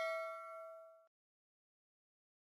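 Notification-bell 'ding' sound effect from a subscribe-button animation, a bright chime with several overtones ringing out and fading, stopping about a second in.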